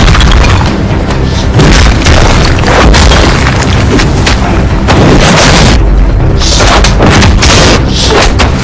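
Film fight sound effects: a rapid run of heavy punches and body impacts with booming low thuds, over loud action score music.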